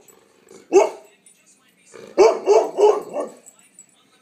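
Bernese mountain dog barking demandingly: one bark about three-quarters of a second in, then a quick run of about five barks a little past two seconds.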